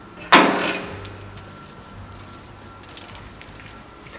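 A single sharp metallic clank that rings and dies away within about a second, followed by a low steady hum.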